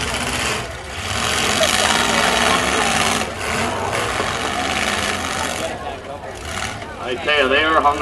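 Demolition-derby pickup truck engines running loud, the noise swelling and dipping a few times as the drivers work the throttle while the trucks are hung up together. A PA announcer's voice comes in near the end.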